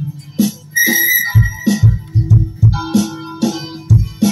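Music: low plucked notes on an electric upright bass, with percussion clicks and held higher tones over them.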